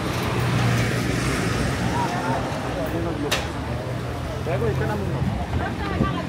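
Busy city street ambience: crowd chatter and voices with traffic and a steady low engine hum, which fades near the end. One sharp click about three seconds in.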